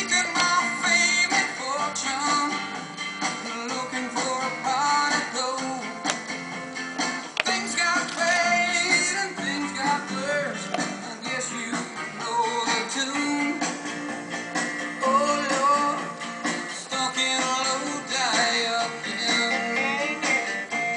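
Background music: a song with singing over guitar.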